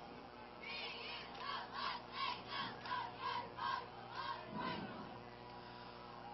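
Football crowd in the stands chanting a rhythmic cheer, heard faintly, at about three calls a second; the chant dies away near the end.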